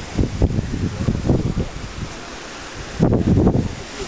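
Wind buffeting the microphone in uneven gusts, strongest about three seconds in, over the wash of surf breaking and churning against sea-cliff rocks.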